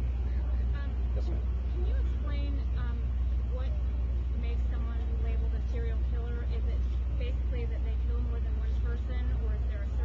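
A steady low hum runs underneath throughout, with a faint voice speaking off-mic in snatches over it.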